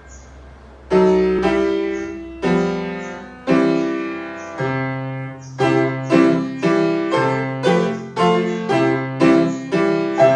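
Upright piano played with both hands: after a brief pause, chords are struck from about a second in, slowly at first, then about two a second in the second half, each note ringing on.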